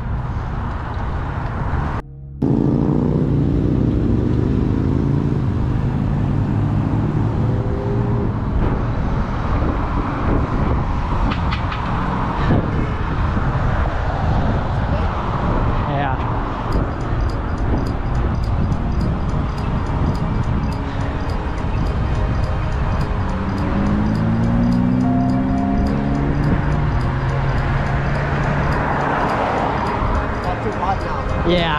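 Wind buffeting a bicycle-mounted camera's microphone while riding, a steady low rumble, with road traffic passing.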